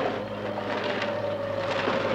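A steady rushing, wind-like whoosh over a held tone: a cartoon sound effect.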